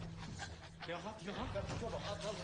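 Faint voices and vocal noises from the drama's soundtrack playing quietly in the background, over a steady low hum.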